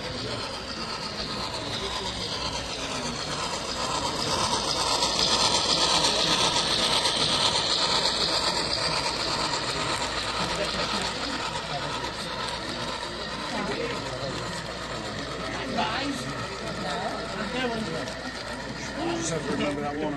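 Model of a Pennsylvania Railroad steam locomotive hauling a long string of freight cars past on the layout track: a steady mechanical rolling clatter of motor and wheels that swells about five seconds in as the train comes close, then eases off.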